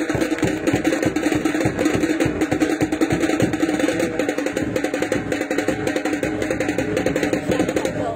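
Loud music with a fast, busy drumbeat over a steady low drone, which cuts off suddenly at the end.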